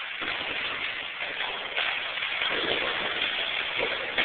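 Water percussion: hands slapping and churning the water of a swimming pool, a continuous splashing with sharper slaps through it that grows busier and heavier about halfway through.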